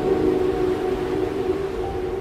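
Ambient music of long, steady held tones, over a low wash of storm and surf noise.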